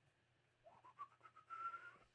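Faint whistling: a few short notes climbing in pitch, then one longer, higher note held near the end.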